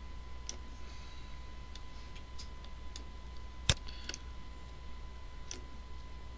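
Scattered short clicks from a computer mouse and keyboard, one sharper click a little past halfway, over a faint steady electrical hum with a thin high whine.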